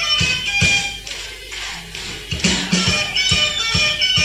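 Rock band playing an instrumental stretch between sung lines, with a regular beat. It drops quieter about a second in and comes back up about two and a half seconds in.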